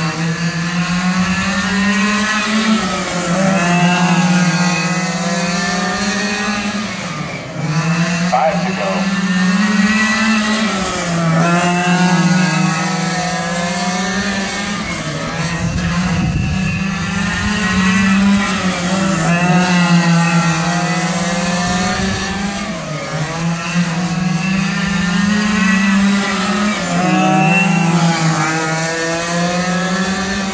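Engines of two radio-controlled stock cars running laps together on an oval, their pitch rising on the straights and dropping into the turns, about every four seconds.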